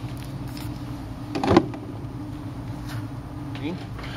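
A steady low buzzing hum with one sharp knock about a second and a half in, as the phone and tools are handled on the bench.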